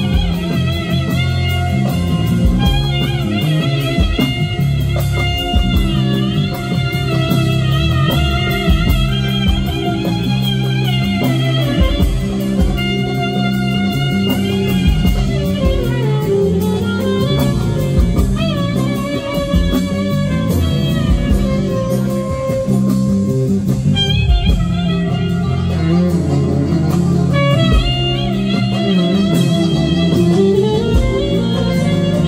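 Live band music: a clarinet plays a bending, ornamented melody over a steady accompaniment of bass guitar, keyboard, plucked strings and hand drum.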